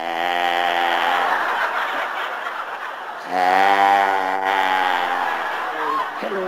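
Audience laughing, with two long held vocal sounds over it, each lasting one to two seconds, the second starting about three seconds in.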